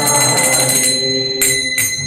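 Brass hand cymbals (kartals) ringing in a kirtan: a bright sustained ring struck at the start and struck again twice in the second half, over lower held tones.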